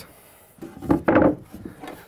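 Cedar blocks being slid and set down by hand on cedar deck boards: a wooden scrape with a knock, starting about half a second in and lasting about a second.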